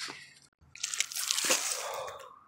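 Dry fallen leaves and loose soil crunching and rustling, starting about a second in, after a brief faint sound at the very start.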